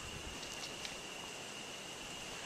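A steady high-pitched insect drone over faint background hiss, with a few faint clicks around the middle.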